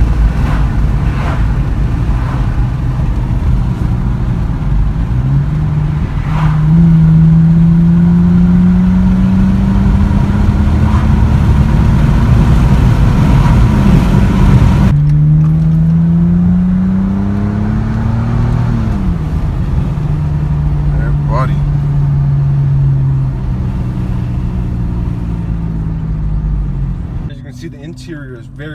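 BMW 5 Series sedan's engine accelerating under load over a heavy low road rumble. Its pitch climbs steadily for several seconds, drops, climbs again, then holds level before easing off near the end.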